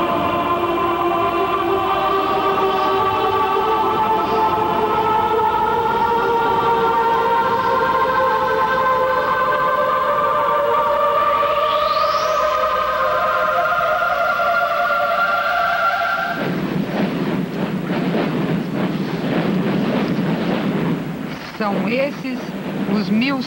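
Sustained music chords with a rising sweep near the middle. About sixteen seconds in, these cut abruptly to a large corps of drums playing fast and continuously.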